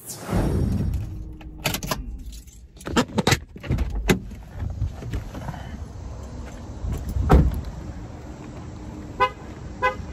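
A few sharp knocks and thumps, the loudest about seven seconds in, then two short car-horn chirps about half a second apart near the end, the kind a car gives when it is locked with its key fob.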